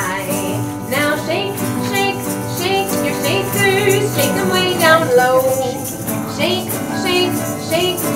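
A woman singing a children's action song while strumming an acoustic guitar, the melody moving without pause.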